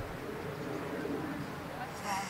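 Steady outdoor background with faint bird calls and indistinct distant voices.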